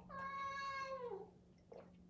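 A house cat meowing once: a single call about a second long that holds its pitch and then drops at the end.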